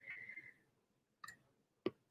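Near-quiet room with a few faint, short clicks, the sharpest one just before speech resumes.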